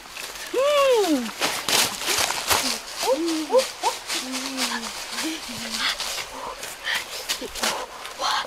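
A series of wordless, high-pitched vocal calls that rise and fall in pitch, one long call about half a second in, then several shorter ones. Short crackles and rustles run underneath.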